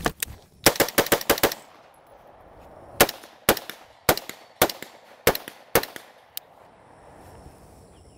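Semi-automatic AR-style rifle firing rapid shots: a fast string of about six shots in the first second and a half, two on each of three close targets, then after a pause six steadier shots about half a second apart, knocking down a steel plate rack.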